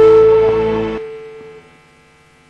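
Electric guitar, a Les Paul-style solid body, letting a held note ring at the end of a solo. It fades away over the first second and a half, leaving a faint steady amplifier hum.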